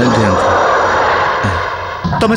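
A loud rushing whoosh, the kind of dramatic sound effect laid over a scene change, that slowly fades away over about two seconds.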